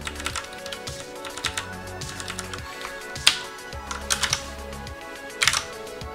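Computer keyboard keys pressed in a handful of separate sharp clicks, the loudest about three seconds in and again near the end, over steady background music.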